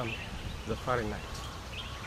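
A man's voice in a pause of speech, one short voiced syllable about a second in, over a steady low outdoor background rumble.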